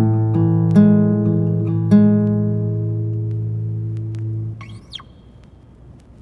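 The end of an indie pop song: an acoustic guitar plucks its last few notes, then lets a final chord ring out and fade until it is damped about four and a half seconds in. A brief squeak follows, then only faint hiss.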